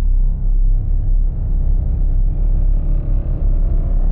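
Deep wavetable synthesizer bass from a UVI Falcon MPE patch, held under fingers pressing on a Sensel Morph pressure pad. Its tone shifts as finger pressure drives the phase distortion and finger position moves through the wavetable.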